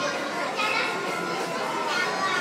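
Indoor arcade ambience: children's and adults' voices talking and calling over general background chatter.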